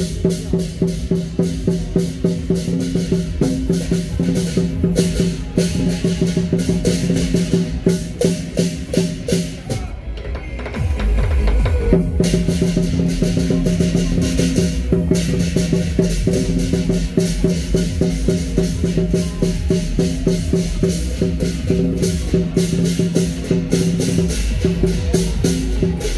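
Lion dance percussion: a big drum, gong and cymbals played together in a fast, steady beat with the gong ringing under the strokes. About ten seconds in the bright cymbal crash drops out for some two seconds under a low drum rumble, then the full beat returns.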